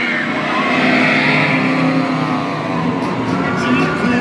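Two Radiator Springs Racers ride vehicles speeding past side by side on the track, a rushing pass that swells about a second in and then falls in pitch as it goes away.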